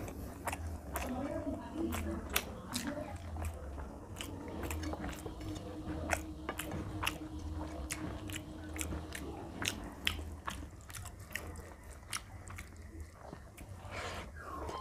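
Close-miked eating sounds: a person chewing a mouthful of rice and fish, with wet smacks and mouth clicks about two or three times a second. Fingers squish rice into curry on a paper plate.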